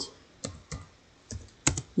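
Computer keyboard being typed: about five separate keystrokes with uneven pauses between them.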